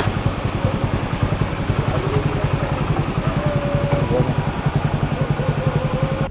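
A small engine idling with a fast, even putter.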